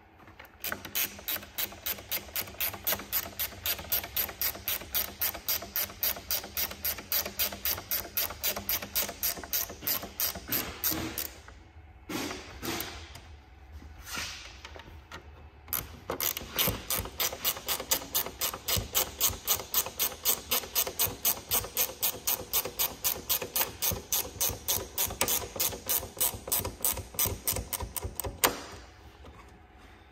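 Hand ratchet clicking steadily, about four clicks a second, as a bumper bolt is turned; the clicking stops for a few seconds midway, then runs on again until shortly before the end.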